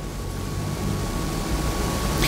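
Steady background room noise between sentences: an even hiss over a low rumble, with a faint steady high hum.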